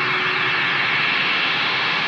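Electric guitar played through heavy effects, giving a steady, hissing wash of sound with no clear notes.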